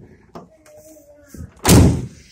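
A single loud slam from the tailgate of a 2018 Ford Raptor pickup, about one and a half seconds in.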